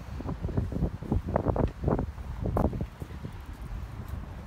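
Wind buffeting a phone's microphone, low rumbling gusts with a few short bumps of handling noise as the phone is moved about; it eases off in the last second.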